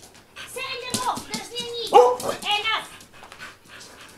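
XL Bully dog whining and yelping excitedly in short, high-pitched calls that bend in pitch, loudest about two seconds in.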